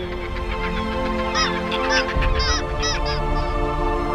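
A bird calling: a run of about half a dozen short calls, each rising and falling in pitch, over background music with steady held notes.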